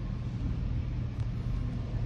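A steady low rumble of background noise with no speech.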